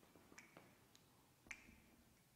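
Faint squeaks and taps of a marker writing on a whiteboard, with two short squeaks about half a second and a second and a half in.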